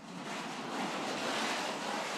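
Chair-caster wheels of a PVC-pipe cat wheelchair rolling fast across a tiled floor: a steady rolling noise that starts suddenly.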